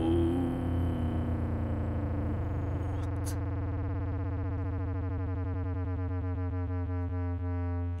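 Distorted, gritty synth bass note from the Akai MPC's Fabric plugin (modular triangle oscillator), held on the keyboard after its pitch envelope has settled, so it sustains at one steady pitch with a fast, even buzz. A small click comes about three seconds in.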